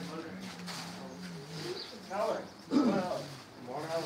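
Indistinct men's voices talking in a crowded room, in short loud bursts during the second half, over a low steady hum in the first half.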